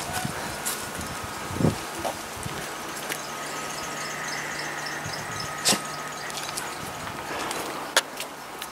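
Steady outdoor background noise with a faint hum, broken by a few brief knocks.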